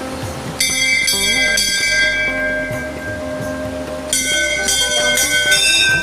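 Brass temple bells being rung: a run of strikes begins about half a second in and another about four seconds in, the metallic ringing carrying on between strikes.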